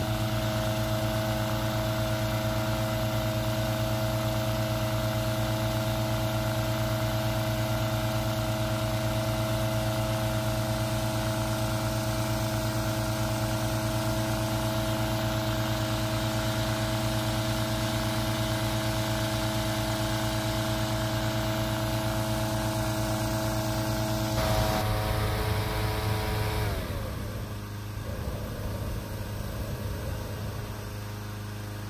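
Small petrol engine of a hot air balloon inflator fan running steadily at high speed, blowing cold air into the envelope. About three-quarters of the way through, the propane burner starts firing, and soon after the fan engine is throttled back, its pitch falling.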